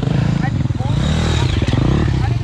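Dirt bike engines running at idle, with a brief rise in revs around the middle.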